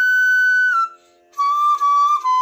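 Bamboo transverse flute (bansuri) playing a held high note that steps down slightly and stops a little before halfway. After a short pause for breath a lower note begins and is held, briefly re-articulated near the end.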